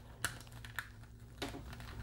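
A few faint plastic clicks and taps as the panels and tabs of a Kingdom Megatron Transformers action figure are handled and pressed together during transformation.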